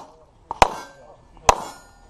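Two handgun shots about a second apart, each a sharp crack with a short ringing tail.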